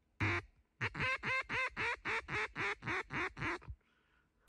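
Mallard hen-style quacking: one quack, then a fast run of about a dozen quacks, about four a second, each dropping in pitch and the last few shorter.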